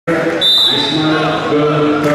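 Referee's whistle blown once, about half a second in, and held steady for over a second to start the wrestling bout, over voices shouting.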